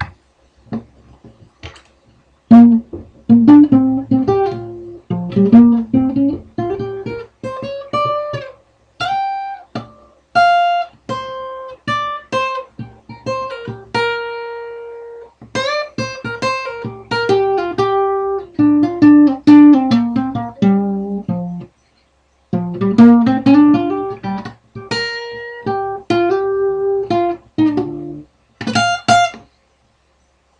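Guitar playing a single-note riff, plucked notes stepping up and down across roughly 200 to 800 Hz, beginning a couple of seconds in. One note rings out long about halfway through, there is a brief pause about two-thirds of the way in, and the riff ends with a quick group of higher notes.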